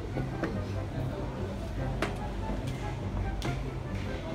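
Indistinct voices and background music, with three light knocks spread through.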